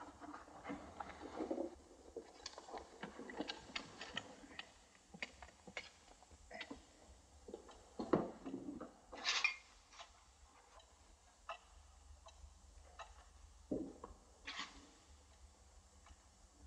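Pendulum wall clock ticking faintly, about two to three ticks a second, in a quiet room, with a few soft scuffs and knocks from people moving.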